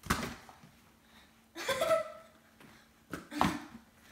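Inflated size 5 Nike Aerostar soccer balls slapping into hands as they are tossed and caught, three sharp thumps spread across a few seconds, with a brief exclamation about two seconds in.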